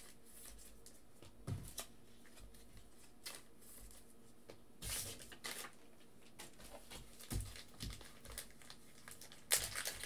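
Faint rustling and crinkling of trading cards and plastic penny sleeves being handled, in scattered short bursts with light clicks and a louder rustle near the end.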